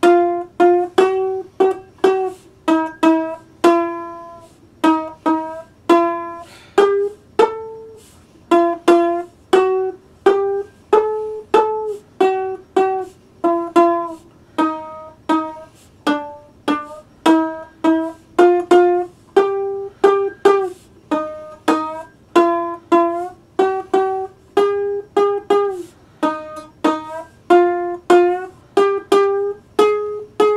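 One-string C.B. Gitty diddley bow plucked with the thumb and played with a slide: a steady run of single notes, about two a second, each ringing and dying away, the pitch moving between notes and now and then gliding.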